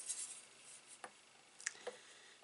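Faint handling sounds as a metal ruler is brought onto paper on a scoring board, with a few light clicks.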